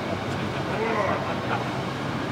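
Distant shouts and voices of football players over a steady low hum.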